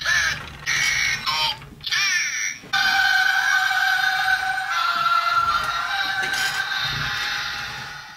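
Synthesized electronic sounds: a few short warbling, pitch-gliding bursts with gaps between them, then a long steady electronic tone that holds for several seconds and fades out at the end.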